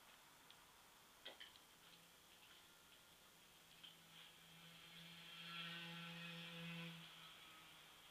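Near silence: room tone, with a few faint clicks about a second in and a faint steady hum with overtones from about four to seven seconds in.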